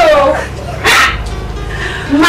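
A woman's excited exclamations in greeting: a falling cry, then a short high squeal about a second in, over steady background music.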